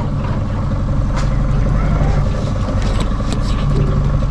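Boat's outboard motor running steadily at low trolling speed, a low even drone.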